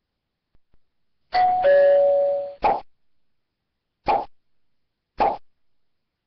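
Electronic two-tone chime, a higher note dropping to a lower one held about a second, followed by three short pops about a second apart: software notification sounds.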